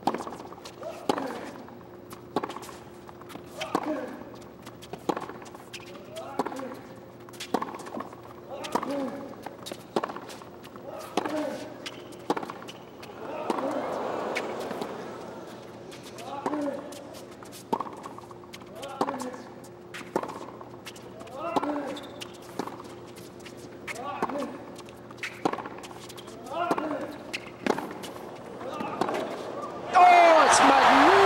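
A long tennis rally on a hard court: rackets striking the ball about once a second, back and forth, with a short grunt after many of the shots. A crowd murmur swells briefly about halfway through.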